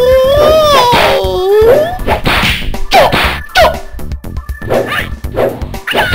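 Kung-fu movie fight sound effects: a rapid run of whooshes and whacking hits. It opens with a long wavering cry that rises and falls over the first two seconds.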